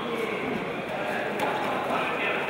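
Indistinct voices of spectators and coaches echoing in a large sports hall during a hand-to-hand combat bout, with a faint knock about one and a half seconds in.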